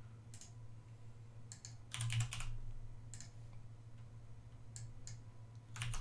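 Computer keyboard keystrokes and clicks in short scattered bursts, the busiest cluster about two seconds in and more near the end, over a low steady hum.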